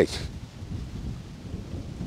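Low, uneven rumbling background noise in a pause between words.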